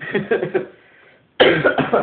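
A man's voice: a short laugh trailing off, then after a brief pause a sudden loud burst of coughing about a second and a half in.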